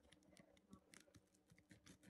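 Near silence, with faint, irregular clicks from a pizza cutter wheel rolling through the crust and over the plate.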